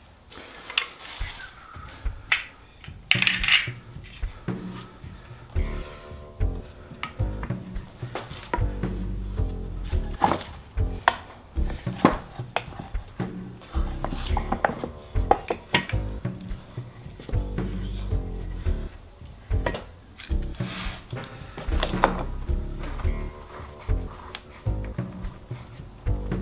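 Clamps and wood handled on a workbench: repeated sharp clicks, knocks and metallic clatter as a long aluminium bar clamp is fitted across a glued electric bass body, with paper rustling early on. Background music comes in about six seconds in and continues underneath.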